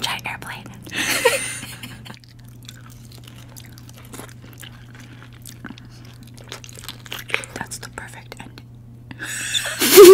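Close-up chewing of mangosteen fruit: many small wet mouth clicks and smacks. A short voiced sound with falling pitch comes about a second in, and voices start up near the end.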